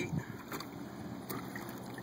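Quiet outdoor background: a low, steady hiss with a couple of faint, soft knocks.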